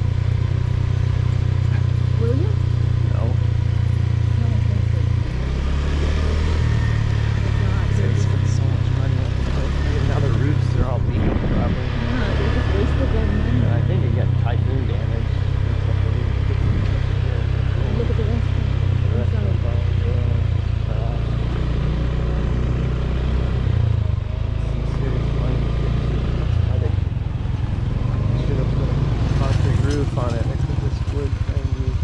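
Engine drone and road noise of a vehicle driving slowly, heard from on board. The engine note shifts in steps several times as the speed changes.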